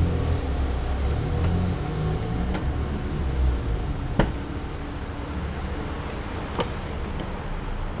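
A low steady rumble with a couple of sharp clicks a few seconds apart, as the rear door latch of a Chevrolet S10 crew-cab pickup is worked and the door is opened.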